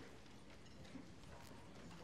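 Near silence in a large hall, with a few faint scattered clicks and knocks.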